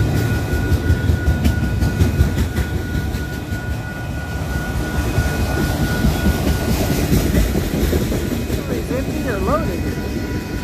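Autorack freight cars rolling past close by, their wheels rumbling and clacking over the rail joints. A steady high tone runs under the rumble and stops about seven seconds in.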